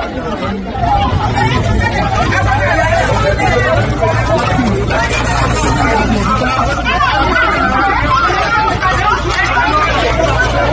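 Crowd babble: many people talking and shouting over one another at once, with no single voice standing out, over a steady low rumble. It grows louder about a second in and stays at that level.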